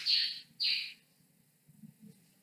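Marker writing on a whiteboard: two short, high scratchy strokes in the first second.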